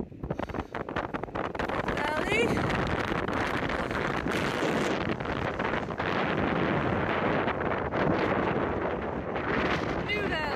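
Strong wind blowing across the microphone, a loud, gusty rush.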